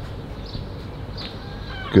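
A few short bird calls over a steady background hiss, the clearest a quick rising-and-falling call near the end.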